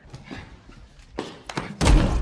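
Film sound effect of a man's head being slammed down onto a table: one heavy thud near the end, the loudest sound, after a couple of sharper knocks about a second earlier.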